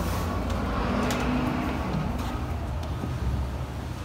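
Steady low rumble with a few sharp clicks as a glass entrance door is pulled open and walked through; the rumble drops away near the end as the door closes behind.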